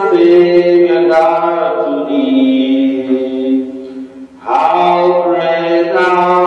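Church hymn music at the end of Mass: long held notes sounding together, stepping slowly from one to the next, with a short break between phrases about four seconds in.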